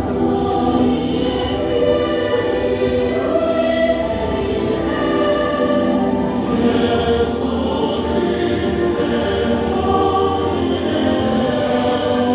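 A choir singing slow, held notes.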